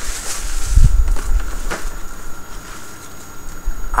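Rustling and crinkling of tissue paper and a paper gift bag as a present is torn open, with a dull low thump about a second in.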